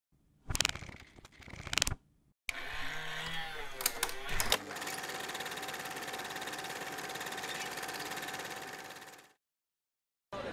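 Sound design for an animated logo ident. Two sharp clicks come about a second apart, then a noisy swell with a couple of clicks, which settles into a steady, fast mechanical rattle with a held tone. The rattle fades and stops shortly before the end.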